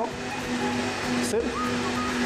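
A man's voice saying a single word over background music that holds a steady note.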